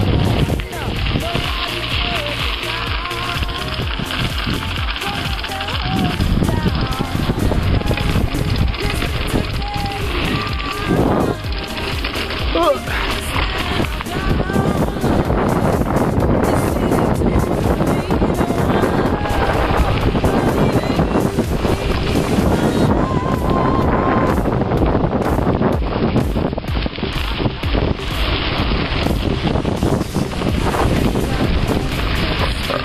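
Wind rushing over the microphone of a camera riding along on a mountain bike, a steady noise throughout, with faint voices of other riders under it.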